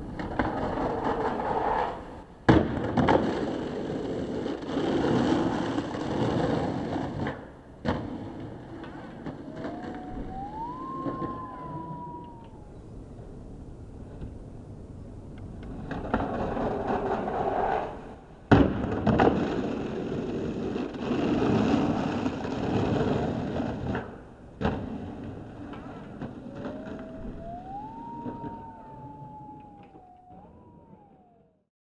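Skateboard slapping onto a long stucco ledge with a sharp crack, then about five seconds of trucks grinding down it, ending in a clack as the board lands. The same sequence plays twice. After each one comes a single wail that rises and then falls, lasting a few seconds.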